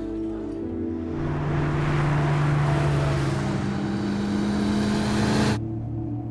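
Background music with long held notes, overlaid by a swelling rush of vehicle noise. The rush builds from about a second in and cuts off abruptly shortly before the end.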